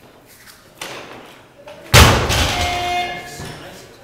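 A loaded 100 kg Olympic barbell dropped onto a lifting platform about two seconds in: one heavy thud, then the steel bar and plates ringing and rattling for about a second and a half as it dies away. A softer burst of noise comes about a second earlier.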